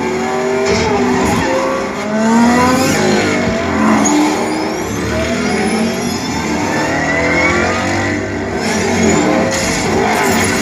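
A movie's car-race soundtrack played through the TV and small desktop speakers and heard in the room: many engines revving and passing at once, their pitches rising and falling over one another.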